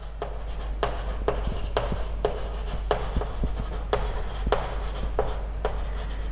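Chalk writing on a blackboard: a run of sharp taps and short scratches as letters are written, about two strong strokes a second with lighter ticks between.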